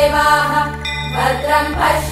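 Women's voices chanting Vedic Sanskrit verses together in a steady recitation over a low, unchanging drone, with a brief pause a little under a second in.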